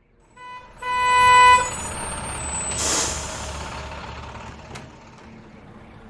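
Sound effects: a brief beep, then a buzzer-like tone held for about a second, followed by a hissing whoosh that swells and slowly fades.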